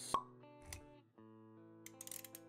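Intro jingle with held musical notes, broken by a sharp pop just after the start and a softer click with a low thump a moment later.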